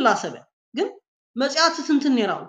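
Speech only: a man talking in three short phrases, with dead-silent gaps between them.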